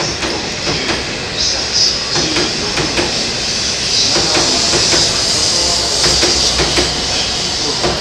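E7/W7 series Shinkansen train running past at low speed and picking up speed, with a steady rumble and hiss and repeated sharp clicks from its wheels.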